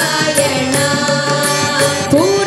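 Hindu devotional bhajan sung by a group of voices, led by a woman, over a harmonium holding a steady note, with tabla and dholak drum strokes keeping the rhythm.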